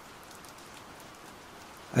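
Steady rain falling, with a few faint scattered drop ticks, as a soft background ambience.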